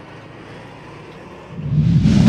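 Military convoy vehicles driving along a road: steady engine and road noise, swelling much louder about a second and a half in.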